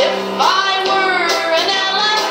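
Children's praise song: a voice sings the elephant verse, sliding up into one long wavering note over light backing music.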